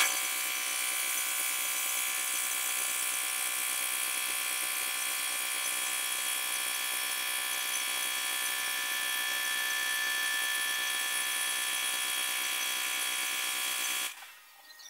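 Compressed-air tool on a workshop air line running continuously at a steady high-pitched whine over a hiss, held at one pitch throughout.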